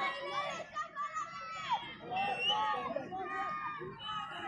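Crowd of spectators at an athletics track: many overlapping distant voices chattering and calling out, with no single voice standing out.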